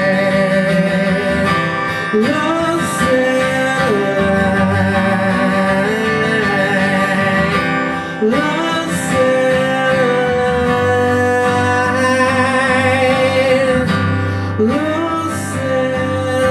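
Live acoustic guitar strumming with a male voice singing. The voice scoops up into long held notes three times, at about two, eight and fourteen and a half seconds in.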